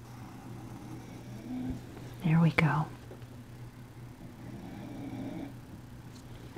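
Pencil drawing on paper, faint under a steady low hum, with a short wordless vocal sound in two quick parts a little over two seconds in.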